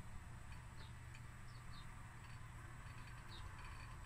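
Quiet room tone: a faint, steady low hum, with a few faint, brief high ticks scattered through it.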